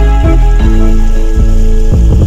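Background music of held, sustained notes, with the hiss of rushing water under it.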